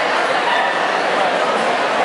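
A dog giving short, high-pitched cries over the steady chatter of a crowd.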